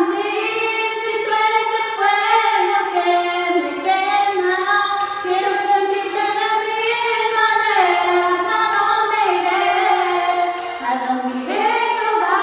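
Two young female voices singing together in Spanish, holding long notes that step from pitch to pitch.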